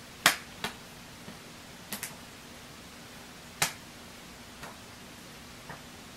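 Pages of a thick paperback book being turned by hand: about half a dozen short, sharp paper snaps, the loudest just after the start and another strong one past the middle.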